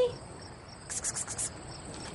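Crickets chirping at night: a steady high trill, with a louder run of about five quick chirps about a second in.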